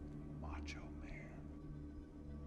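A brief breathy human vocal sound, about half a second in, with a fainter one just after a second, over a low steady hum.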